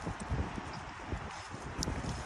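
Footsteps on grass and fallen leaves while walking with a phone, with wind rumbling on the microphone.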